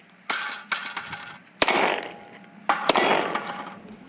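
Rifle or pistol shots fired at steel range targets, about five in all, each hit followed by the metallic ring of the struck steel plate dying away.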